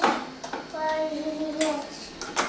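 Metal kitchen utensils clattering in a drawer as a small child rummages through them, followed by a young child's voice holding one sung note for about a second, with another clink near the end.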